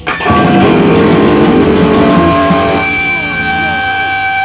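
Rock music with guitar, cutting in suddenly just after the start.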